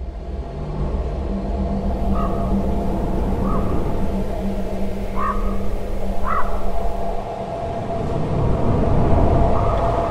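Spooky Halloween background soundscape: a low rumble under steady held tones, with four short animal-like calls in the middle few seconds.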